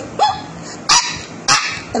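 A dog barking: a short rising yelp, then two sharp barks about half a second apart.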